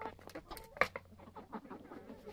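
Hens clucking quietly while pecking at feed in a plastic tray, with a few sharp beak taps, the loudest just under a second in.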